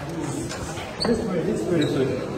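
Voices of people talking in a moving crowd, with a short knock about a second in.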